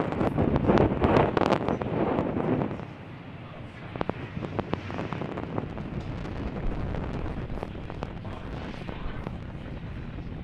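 Falcon 9 first stage's nine Merlin engines firing during ascent: a rumbling noise with crackling, loudest for the first three seconds, then quieter with sharp crackles scattered through.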